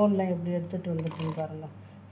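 A woman talking over the light clatter and rustle of peanuts being stirred by hand in a steel mixer-grinder jar, with a few sharp clicks about a second in.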